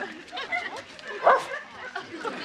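A man making short, wordless dog-like vocal noises, the loudest about a second and a quarter in.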